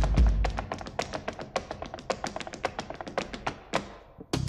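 Quick, dense run of hand claps and foot stamps from a folk ensemble keeping a percussive rhythm, with little pitched sound, as part of a folk-jazz stage performance; it thins out near the end.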